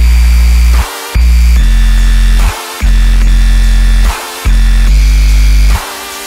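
Electric bass guitar playing deep sub-bass notes, four long held notes each over a second with short breaks between them, under a dubstep track whose own low end has been removed.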